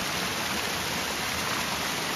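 Water from a small mountain spring falling in thin streams over rock, a steady splashing rush.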